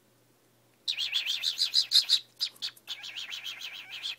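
Cockatiel calling in a rapid chattering series of chirps, about eight a second. It starts about a second in, falters briefly in the middle, then runs on again.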